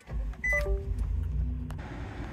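A pickup truck's engine catches and settles into a steady low idle. About half a second in, a short falling electronic chime sounds, and a single click follows near the end.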